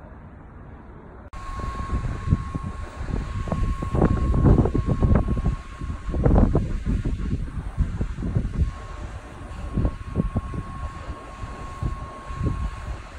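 Wind buffeting a phone microphone in gusts of low rumbling noise, strongest around the middle, over a thin steady whine that drops out midway and returns.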